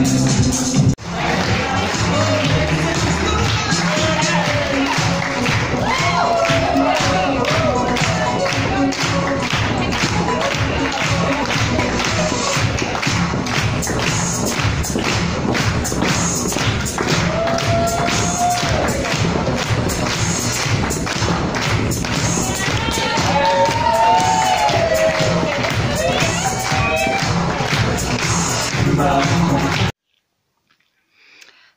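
Loud pop music with a steady beat and a singing voice, played over a hall's sound system. The sound dips sharply for a moment about a second in, then carries on.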